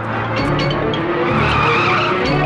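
A jeep's tyres skidding and squealing on loose ground, the squeal growing loudest near the end, with film music underneath.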